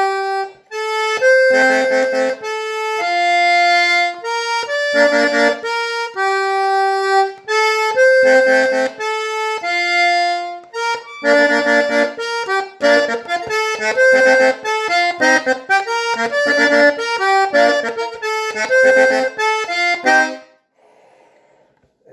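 Hohner Erica diatonic button accordion played solo: a quick melody over repeated bass-and-chord stabs. The playing stops shortly before the end.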